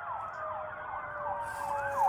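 Distant emergency-vehicle siren in a fast yelp pattern, its pitch sweeping down and back up about three times a second, growing stronger near the end, with a steadier, slowly falling tone beneath it.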